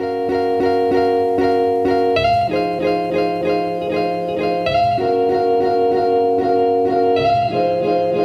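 Background music: plucked-string notes in a steady repeating pattern, the chord changing every two to three seconds.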